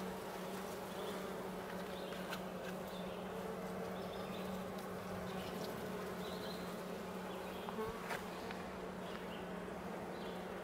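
A colony of honey bees buzzing in a steady hum from an opened hive, its frames crowded with bees. A couple of light knocks come about eight seconds in.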